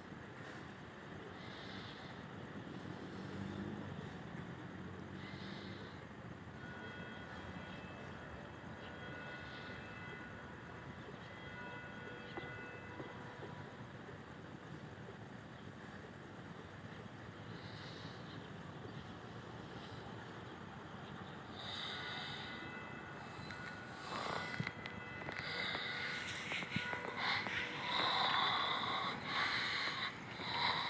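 Faint, distant church bells of St. Thomas Cathedral, their tones coming and going over a steady hum of city and riverside ambience. In the last few seconds, louder rustling and knocks come from the camera being handled and moved.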